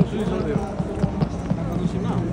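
A voice speaking over steady street noise, with a low steady hum and a run of short knocks about four or five a second.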